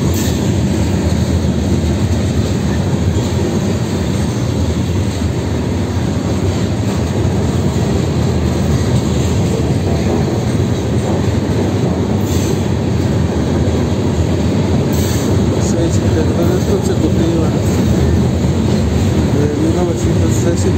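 Freight train of gondola cars rolling past, a loud steady rumble of steel wheels on rail, with a few brief sharper noises about twelve and fifteen seconds in.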